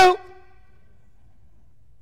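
The end of a man's single loud spoken word, "True," its ring dying away within about a second in the room's reverberation, then steady low room tone.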